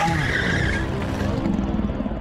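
Outro sound effect for an animated end card: a dense rushing noise over a low rumble that thins out in its second half.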